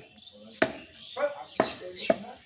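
Heavy meat cleaver chopping beef on a wooden stump block: two sharp chops about a second apart, with voices talking in the background.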